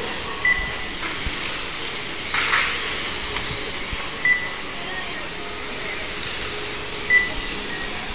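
Electric 1/12-scale on-road RC race cars running on the track: a steady high whine and hiss of their motors and tyres. Short high beeps sound three times, and a brief loud rush comes about two seconds in.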